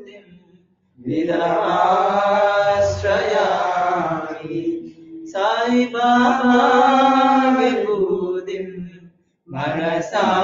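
A voice chanting a Sanskrit devotional mantra in long, drawn-out phrases with held notes: one about a second in, another after a short breath, and a third starting near the end.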